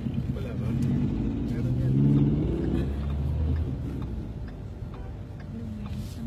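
Steady low rumble of a moving car heard from inside the cabin, with indistinct voices over it, loudest about two seconds in.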